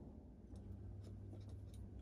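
Faint handling noise: a few light clicks and rubs as a plastic light-switch-style panel and a mains plug are handled, over a low steady hum.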